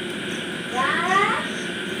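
Domestic cat giving one meow that rises in pitch, about halfway through; the owner takes it as the cat asking to be fed.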